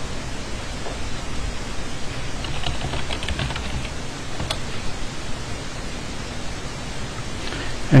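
Steady hiss of background noise, with a short run of faint computer keyboard keystrokes about two and a half to three and a half seconds in and a single click near the middle.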